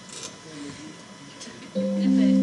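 A quiet lull between pieces of live band music, with faint voices, then near the end a loud, steady low sustained note from one of the band's instruments comes in and holds.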